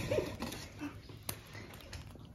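The tail end of a short laugh in the first half-second, then low room sound with a single faint click about a second later.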